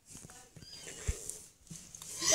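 Faint high-pitched mews from young kittens, with a soft knock of the phone being handled about a second in.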